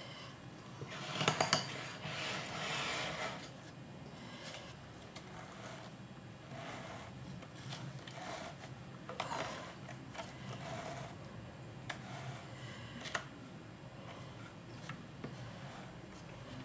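Wool fleece batt being lifted and peeled by hand off the large drum of a wooden drum carder: scratchy rustling and tearing as the fibres pull free of the wire teeth, in short bursts, the loudest about a second in.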